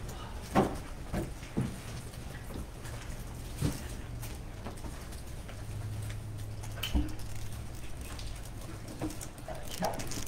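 Quiet room tone with a low hum, broken by a few sharp knocks and clicks, three of them louder than the rest, spaced a few seconds apart.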